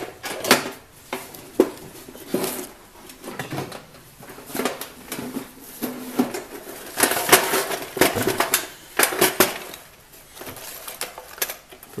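Clicks and rattles of small diamond rotary-tool bits and their storage case being handled, with a busier stretch of clattering a little past the middle.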